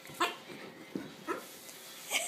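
Dogs playing, with three short barks or yips, the loudest just after the start.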